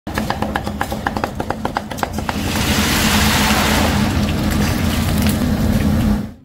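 Steel cleaver chopping raw shrimp on a wooden chopping block in a quick run of about fifteen strokes. From a little after two seconds in, a steady loud sizzle of minced shrimp deep-frying in hot oil takes over. A low steady hum runs underneath throughout.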